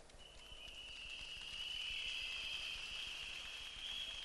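Faint crowd response: many whistles blown together in a steady shrill, starting just after his sentence ends and swelling a little, over a low haze of crowd noise.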